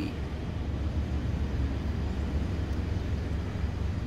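Steady low vehicle rumble heard inside a van's cabin.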